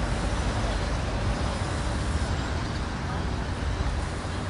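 Steady vehicle and traffic noise with background voices.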